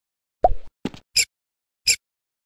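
Cartoon sound effects: a short pop that drops in pitch about half a second in, a click, then short crisp taps about every two-thirds of a second.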